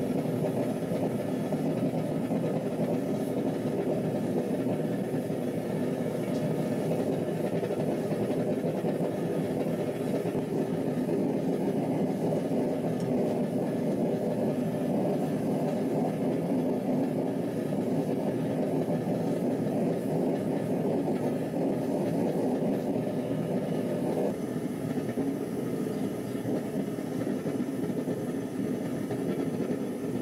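Small fire-brick propane forge running with a steady rushing burner noise while it heats a steel knife blade for heat treatment. The sound thins slightly about six seconds before the end.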